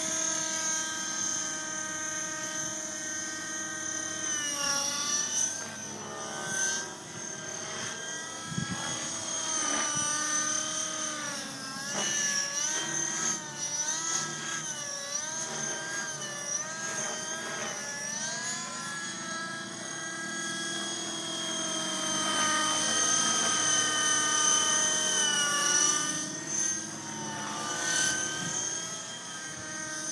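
Align T-Rex 600N radio-controlled helicopter in flight, its nitro glow engine and rotor making a continuous high whine. The pitch rises and falls again and again as the helicopter manoeuvres and passes, growing louder for a stretch near the end.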